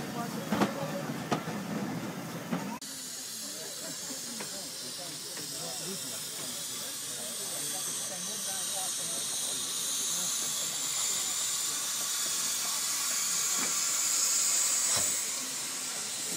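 Steam hissing from BR Standard Class 2 2-6-0 steam locomotive No. 78019, a steady high hiss that grows louder until about a second before the end, then falls off. The first few seconds are a different moment: voices and clicks on a platform beside a locomotive.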